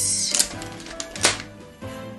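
A face-mist spray bottle pumped, giving a short hissing spray at the start and another brief spray a little over a second in, over background music.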